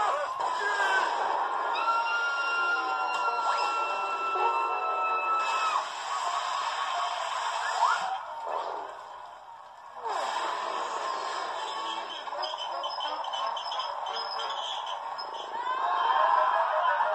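Cartoon soundtrack sound effects played through computer speakers and picked up in the room, with no dialogue; a high note is held for about four seconds starting about two seconds in, and the sound drops away briefly a little past the middle.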